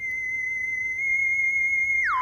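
A single high, steady theremin-like electronic tone, with faint overtones above it, that steps up slightly in pitch about a second in.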